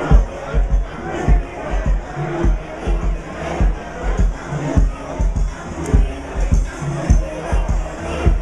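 Loud party music with a heavy, regular bass beat, a little under two beats a second, over the noise of a packed crowd.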